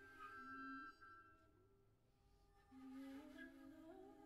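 Soft, sustained held notes from an improvising ensemble of voices and instruments, stepping slowly in pitch. The notes thin out to near quiet about halfway through, then come back.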